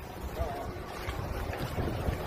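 Wind blowing across the microphone: a steady noise with no distinct events.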